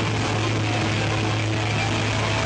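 Loud live hard rock band playing, recorded distorted on an amateur camcorder: a steady, unbroken wash of guitars and cymbals with a constant low hum underneath.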